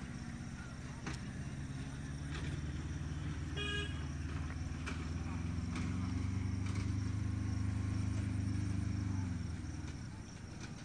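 A motor vehicle's engine humming low and steady, swelling about six seconds in and fading just before the end, with one short horn toot a little after three and a half seconds.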